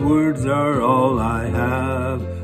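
A man singing a slow melody, holding long notes that bend in pitch, over sustained instrumental accompaniment.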